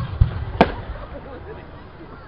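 Aerial firework shells bursting: two deep booms in quick succession at the start, a sharper crack about half a second later, then the rumble dying away.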